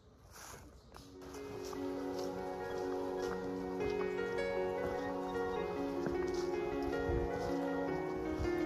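Background music fading in about a second in: layered, sustained notes that shift every second or so, with light, higher notes scattered over them.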